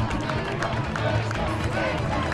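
Murmur of a crowd of people talking, with a steady background music bed underneath.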